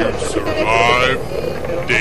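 A person's voice, pitched and wavering, in the first half, over a steady background hum.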